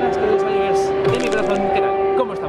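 Pre-show ambient soundtrack playing over a concert hall's PA, a steady dark drone, with people's voices chattering over it.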